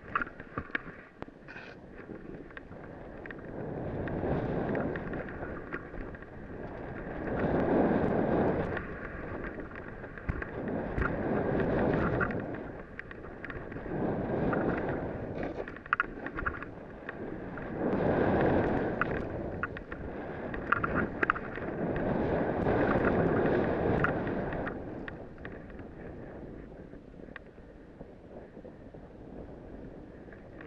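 A snowboard carving turns through powder: a hiss of snow under the board that swells and fades with each turn, about every three to four seconds, then settles into a quieter glide near the end, with wind on the microphone.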